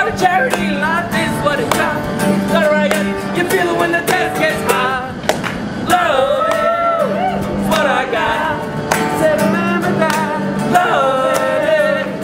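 Acoustic guitar strummed in a steady rhythm, with men singing over it.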